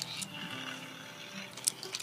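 Quiet handling of a Furby toy held in a hand: a few light clicks and rustles, strongest near the end.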